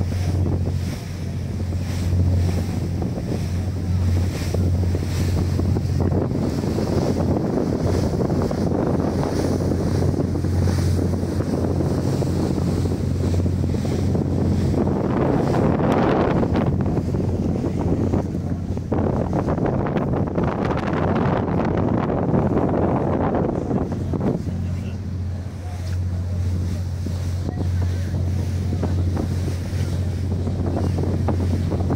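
Wind buffeting the microphone on a moving boat, over the steady low hum of the boat's engine and rushing water; the wind noise swells in the middle while the engine hum fades back.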